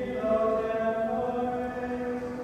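Latin plainchant sung in unison, with long held notes that step slowly up and down in pitch.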